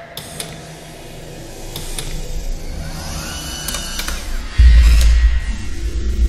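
Logo-intro sound design: sharp mechanical clicks and sweeping effects over building music, then a heavy bass hit about two-thirds of the way through that carries on with a strong low beat.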